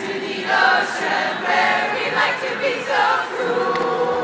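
Mixed-voice student choir singing a cappella, with no clear words. The choir moves through short sung phrases, then holds a steady note near the end.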